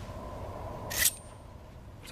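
A single short, sharp click about a second in, over a faint steady hum.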